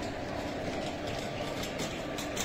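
Shopping trolley wheels rolling and rattling over a tiled supermarket floor, over a steady low hum of store noise.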